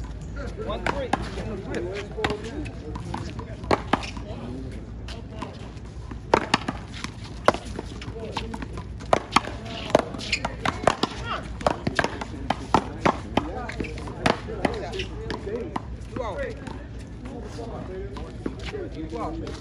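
Paddleball rally: a rubber ball struck by paddles and smacking off a concrete wall and court, a string of sharp, irregular hits starting about four seconds in and running until near the end, sometimes two or three in quick succession.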